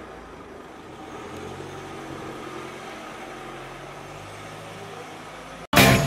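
A car's engine running steadily at idle close by, a low even hum with faint street noise. Near the end it cuts off suddenly and loud music starts.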